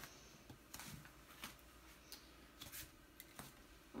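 Near silence, with a few faint clicks and rustles of small items being handled.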